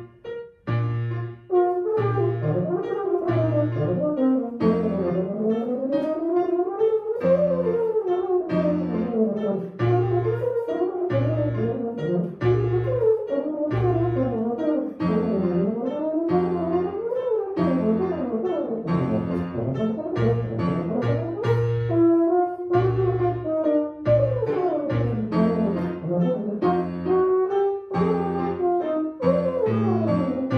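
Euphonium playing fast arpeggio runs that sweep up and down, over grand piano accompaniment with steady, evenly pulsed bass chords. A brief break in the playing comes just after the start.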